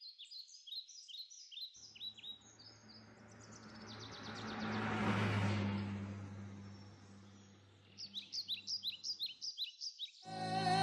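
Birds chirping in quick repeated high calls. Over the middle a whooshing swell with a low hum rises and fades away, and the chirping returns near the end.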